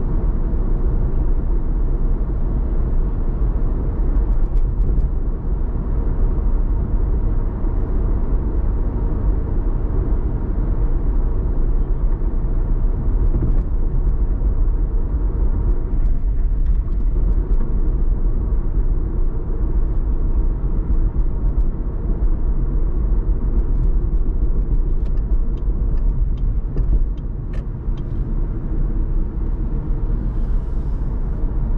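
Car driving at highway speed through a road tunnel: steady low road and engine rumble. A few faint ticks near the end.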